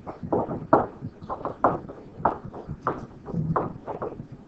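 A pen stylus tapping and knocking on a tablet screen while writing by hand: a string of uneven sharp taps, about two a second.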